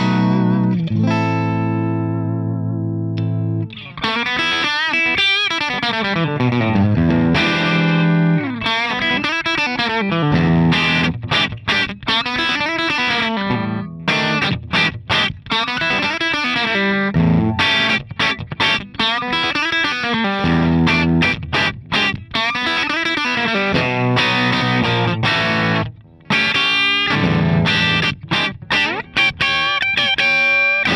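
Electric guitar played through a Ceriatone Prince Tut, a Princeton Reverb-style tube amp, with the volume at 12 o'clock and negative feedback on, into a 2x12 open-back cabinet: a mostly clean tone with light break-up. A held chord with wavering pitch at the start, then single-note lines with bends and short, choppy muted chords.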